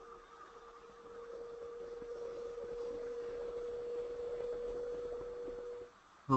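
A steady mid-pitched hum, a single held tone that grows louder over the first few seconds and cuts off suddenly just before the end.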